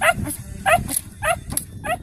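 A young puppy barking at a decoy in bite-work training: four short, high-pitched barks, a little over half a second apart.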